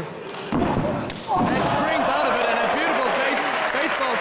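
A heavy thud on a wrestling-ring mat about half a second in and a sharp smack of a kick landing about a second in. Then the crowd shouts and cheers.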